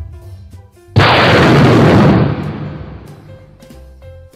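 Thunderclap sound effect: a sudden, very loud crack about a second in that holds for about a second, then rumbles away over the next second or so, over light background music.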